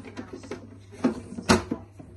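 A homemade clear plastic aquarium lid being wiggled into its slot on the tank's rim: a few light clicks and knocks of plastic on plastic, the loudest about a second and a half in, over a steady low hum.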